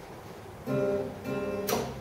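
Acoustic guitar playing a song intro: after a soft start, plucked chords ring out from just under a second in, with a sharp, bright strum near the end.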